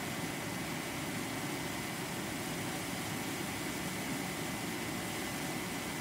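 Steady hiss with a faint high whine from a Class E solid-state Tesla coil running continuously, its discharge and cooling fan going, with no change in the sound.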